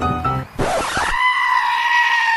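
Piano music ending about half a second in, followed by a long, high-pitched scream that is held steady and drops off in pitch at the end.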